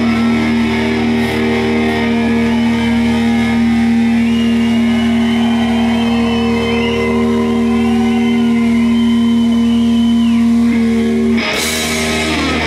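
Live rock band holding a ringing final chord on electric guitars and bass while the lead guitar plays high bends over it, closed by one last hit of the full band near the end.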